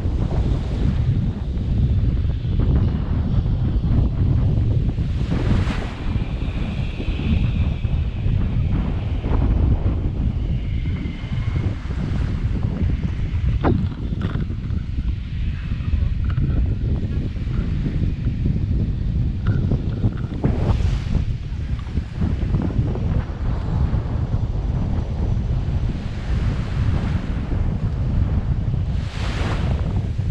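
Wind buffeting an action camera's microphone in a steady low rumble, with small waves washing on a sand beach beneath it.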